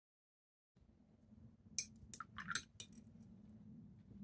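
A few light clicks and clinks from objects being handled on a tabletop, over a faint room hum. They come in a short cluster about two seconds in, the first the loudest.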